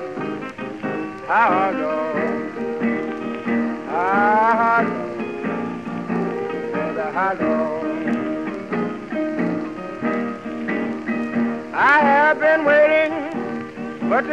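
Instrumental break of a late-1920s acoustic blues recording: steady piano chords under a guitar playing single notes that bend upward, several times over, with the surface crackle of an old record behind them.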